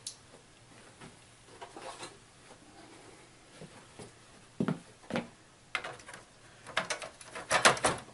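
Scattered plastic clicks and knocks as the back panel of a Dell Inspiron 23 all-in-one PC is handled and laid back over the chassis, sparse at first and then busier, with a dense loud clatter near the end.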